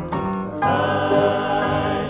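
Gospel recording: piano notes, then about half a second in a vocal group comes in on a held chord over the piano.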